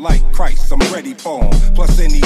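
Hip-hop beat with a re-mastered, boosted deep sub-bass (16–25 Hz rebass): two long, heavy bass notes, the second starting about one and a half seconds in, under a vocal line.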